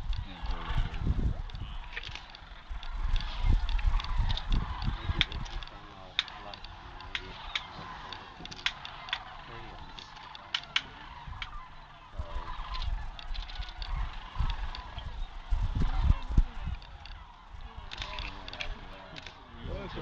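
A large flock of sandhill cranes calling, many overlapping calls throughout, with bouts of low rumble on the microphone near the start and again about three-quarters of the way in.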